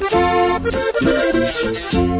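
Instrumental break of a norteño corrido: an accordion plays the melody over a steady, pulsing bass rhythm.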